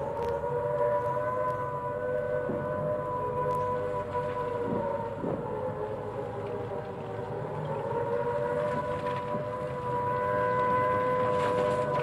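Air-raid siren sounding at a near-steady pitch, wavering only slightly, over a low engine rumble.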